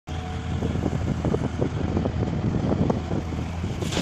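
Diesel engines of a Komatsu hydraulic excavator and a farm tractor running, a steady low rumble with small irregular knocks over it.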